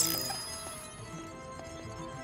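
Background film score with held notes. A sudden bright hit comes right at the start, its high ringing tones fading within about a second.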